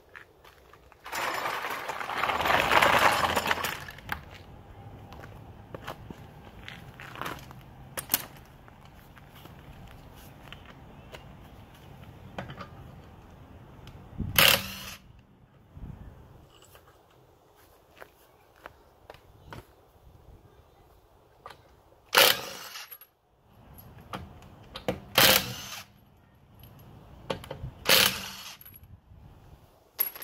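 Cordless impact wrench undoing wheel bolts: a loud run of about three seconds starting about a second in, then four short bursts over the second half, with handling noise between.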